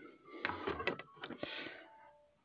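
Handling noise as a vinyl LP is set onto a turntable: several sharp clicks and light knocks in the first second, then a short rustle.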